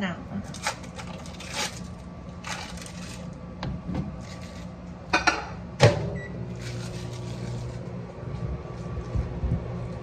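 Kitchen food-prep handling sounds: crinkling of a plastic cheese-slice wrapper being peeled, soft clicks and rustles, and one sharp clatter of a dish about six seconds in, over a steady low hum.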